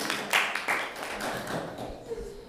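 A small audience clapping: a quick run of hand claps that thins out toward the end.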